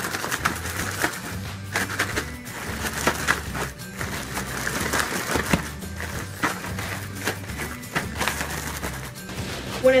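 Chocolate-coated Rice Chex rattling and rustling in a plastic Ziploc bag being shaken with powdered sugar, in quick irregular crackles, over background music.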